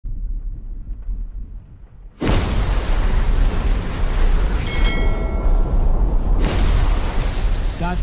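Film sound design of a severe storm: a low rumble, then a sudden cut about two seconds in to a loud, steady roar of storm wind. A few thin, steady high tones sound briefly about five seconds in.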